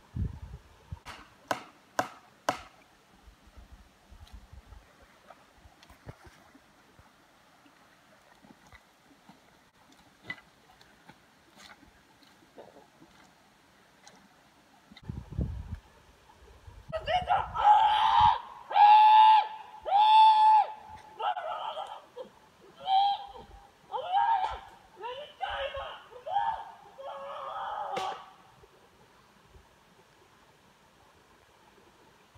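A loud series of high-pitched cries in a voice, wordless and bending in pitch, about a dozen calls over some ten seconds in the second half. Before them come a few sharp cracks near the start and a low thump about halfway through.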